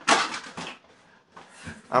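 A twisted towel swung as a rat-tail whip, one sharp snap and swish right at the start that fades out within about half a second.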